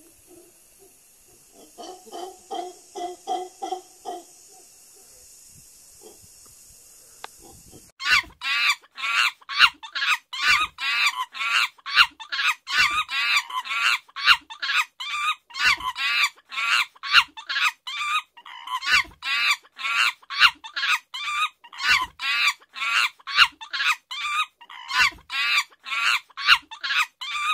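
Chicken clucking, rapid and evenly repeating at about two to three clucks a second, starting about eight seconds in.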